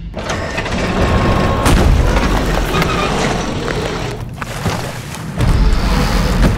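Trailer sound effects of destruction: a sudden, loud, dense rumbling roar of booms and crashes that lasts about four seconds. It drops off briefly, then another heavy boom comes near the end.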